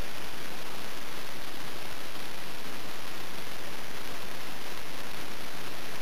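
Steady, even hiss of recording noise, with no distinct sound standing out above it.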